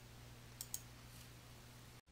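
Near silence over a low steady hum, with two faint computer-mouse clicks a little over half a second in.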